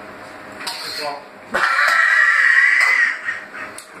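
A man's loud, strained cry, held about a second and a half, starting about a second and a half in, with a shorter vocal sound just before it: a pained reaction to the burn of a raw Carolina Reaper chilli.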